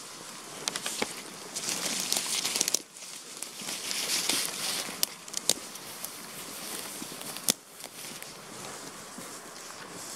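Footsteps of boots crunching and swishing through dry grass, dead leaves and fallen branches, with camouflage clothing brushing through the grass. A few sharp twig cracks stand out.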